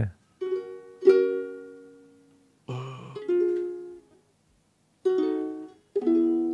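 Ukulele strummed in single chords, each left to ring and fade before the next, with short silent gaps: a tune being tried out slowly.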